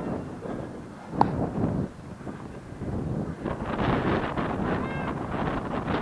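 Wind buffeting the microphone in gusts, with a single sharp click about a second in and a louder gusty stretch past the middle.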